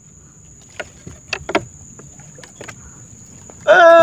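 Scattered light knocks and taps on a wooden canoe's hull, about half a dozen irregular hits over a low background, as the angler shifts his rod and weight in the boat.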